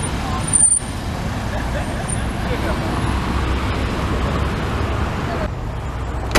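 Steady city street traffic: cars passing through an intersection, engine and tyre noise, with faint voices in the background. It thins out shortly before the end.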